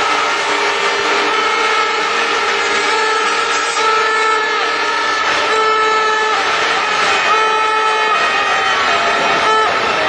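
Stadium crowd noise with many air horns blowing at once: overlapping steady horn blasts at different pitches, starting and stopping, some sagging in pitch as they die away.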